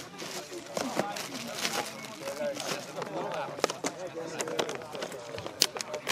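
Several men's voices talking and calling out over one another, with a few short, sharp smacks scattered through.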